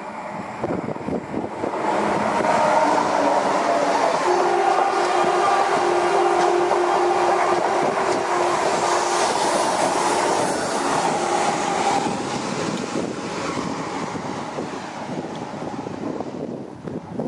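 Renfe Alvia Class 130 (Talgo 250) electric trainset running through a station at speed without stopping. The wheel and rail noise builds over the first couple of seconds, holds loud with a steady hum as the cars pass, then fades over the last few seconds.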